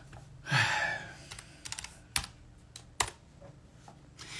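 Keystrokes on a computer keyboard: a string of sharp separate key clicks, likely the ticker ICCM being typed into a trading platform. A short breathy rush of noise comes about half a second in.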